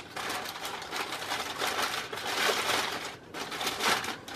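Newspaper rustling and crinkling as it is handled and unfolded from around mugs, an irregular papery crackle with a brief lull about three seconds in.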